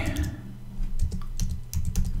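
Typing on a computer keyboard: a couple of keystrokes near the start, then a quicker run of clicks in the second half.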